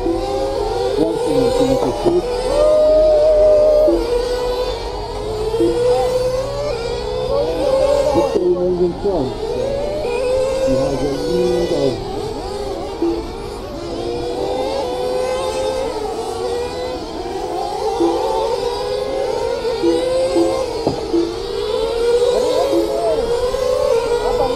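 Several radio-controlled race cars running laps together, their motors revving up and down constantly as they brake and accelerate around the track.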